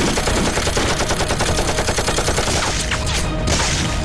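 Machine-gun fire: a long run of rapid, evenly spaced shots that thins out near the end.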